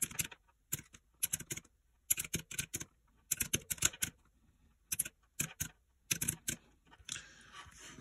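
Keys of a desktop calculator with round, typewriter-style keycaps clicking in quick runs of presses with short pauses between, as a column of figures is punched in and added up.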